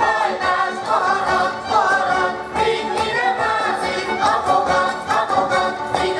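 A group of voices singing a Transdanubian Hungarian folk dance song, steady and continuous.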